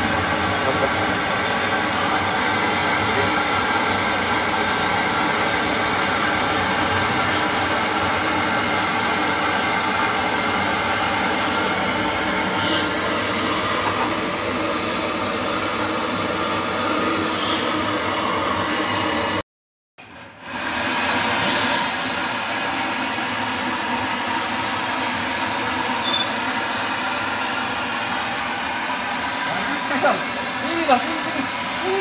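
Gas burner running with a steady rushing noise under a bare sheet-iron wok, heating it during seasoning to burn off its paint coating. The noise breaks off for about a second two-thirds of the way through, then carries on slightly quieter.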